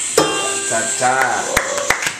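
Voices in a small room, then a few people starting to clap about one and a half seconds in.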